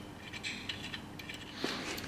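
A few faint, scattered small metallic clicks and scrapes as a Time-Sert insert tool is wound by hand, threading a thread-repair insert into an outboard engine block. The insert turns in easily.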